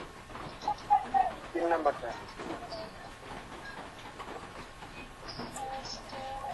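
Muffled, indistinct voices over a noisy video-call line, with short stretches of talk about a second in and again near the end.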